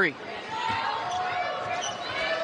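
Basketball being dribbled on a hardwood court, with steady arena crowd noise.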